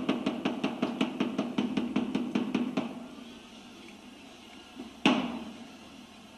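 Wooden staff (the brigadier) struck on a stage floor in the French theatre tradition of the 'trois coups'. First comes a fast roll of knocks, about eight a second, fading over three seconds. Then a single loud knock about five seconds in, the first of the slow blows that signal the curtain is about to rise.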